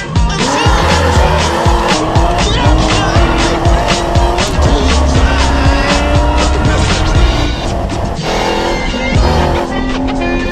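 Ford Ranger rally truck engine at high revs, its pitch rising and holding as it accelerates and changes gear, mixed with background music with a steady beat.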